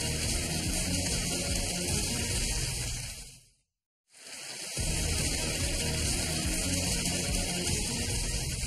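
Game-show theme music with a pulsing bass beat, fading out about three and a half seconds in, a brief silence, then the theme starting again over the title card as the show returns from the break.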